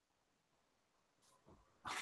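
Near silence on a video call line, with a faint noisy sound starting just before the end.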